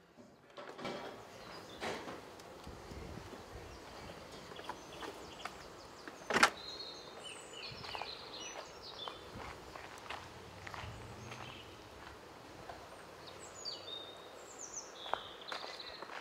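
Outdoor ambience while walking, with light footsteps and a single loud door thunk about six seconds in, as a hotel door shuts. Short high bird chirps come and go in the background.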